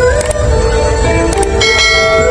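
Music playing, with two short clicks and then a bright bell-like chime from about three quarters of the way in: a subscribe-button click-and-notification-bell sound effect laid over the music.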